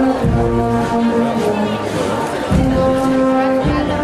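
Brass band playing, with held notes that change every second or so and low brass carrying a strong part.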